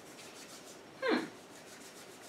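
Hands rubbing together as a runny alcohol-and-aloe hand sanitizer is worked in, a faint soft rubbing. About a second in, a woman gives a short 'hmm' that falls in pitch.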